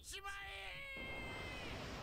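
Anime audio at low level: a character's wailing voice, drawn out and rising and falling in pitch over the first second. From about a second in, a steady hiss with a thin high tone takes over.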